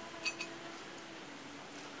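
A light metal-on-glass clink, two quick ringing ticks about a quarter second in, as kitchen tongs touch a glass of ice cubes. A faint steady hum follows in a quiet room.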